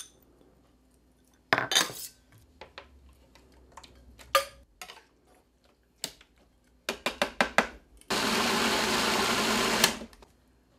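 A spatula scrapes and knocks against a stainless steel sauté pan and the bowl of a small food processor, followed by a quick run of about six clicks as the lid is fitted. Then the food processor's motor runs steadily for about two seconds, puréeing the romesco sauce.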